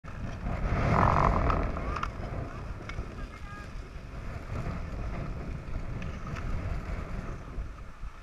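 Wind buffeting the microphone of a camera worn while skiing, a steady low rumble that is loudest in the first two seconds and then settles.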